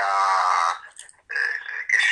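A man's voice heard over a telephone line: one drawn-out syllable, a short pause about a second in, then more words.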